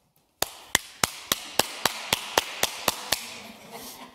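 Hands clapping in a steady, even rhythm: about eleven sharp claps, nearly four a second, stopping a little after three seconds.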